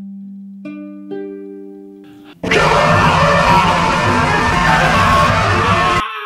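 Ukulele plucked note by note, three notes entering one after another and ringing as they fade. About two and a half seconds in, a man breaks into a loud, harsh scream over the ukulele and holds it for about three and a half seconds.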